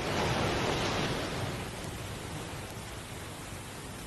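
Surf on a beach: a wave swells and washes back in the first second or so, then a steady hiss of sea noise, heard through the worn, hissy soundtrack of an old film.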